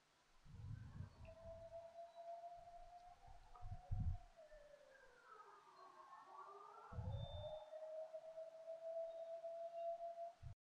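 Faint electronic tones, like a synthesized sound effect or ambient music: a long sustained tone that sags in pitch around the middle and rises back, with a fainter higher tone moving the same way. Low thumps come three times, the loudest about four seconds in.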